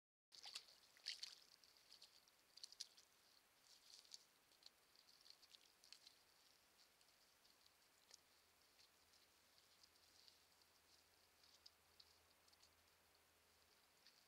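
Very faint night-time trail-camera recording at a beaver lodge: irregular soft ticks and crackles, busiest in the first couple of seconds and then sparser, with a faint low hum in the second half.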